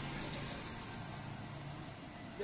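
Road traffic: a steady hiss of passing vehicles with a low engine hum that fades a little near the end.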